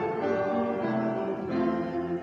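Slow hymn music played on a keyboard, probably the church piano, with held chords changing about every half second.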